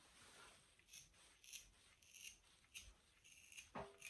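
Faint, soft scratchy strokes, about two a second, of a stripping stone pulled through an Airedale Terrier's wiry coat, plucking out the longest hairs.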